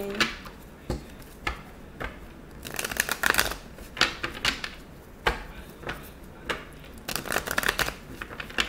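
A deck of tarot cards being shuffled by hand. It comes in bursts of rapid card flicks, the main ones a little under three seconds in and near the end, with single taps of cards between.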